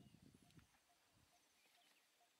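Faint low rustling and thudding from Asian elephants moving and feeding in tall grass, dying away about half a second in. Then a near-silent outdoor background with a faint regular tick about twice a second.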